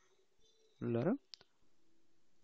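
A single sharp computer mouse click about a second and a half in, just after a short spoken syllable.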